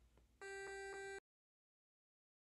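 Micro:bit music playing through a Bluetooth speaker: after a short lull, one electronic square-wave note is held for under a second, then the sound cuts off suddenly.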